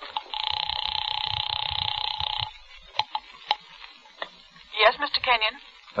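A telephone sound effect: a steady, buzzing ring for about two seconds, then two sharp clicks, then a brief word from a voice.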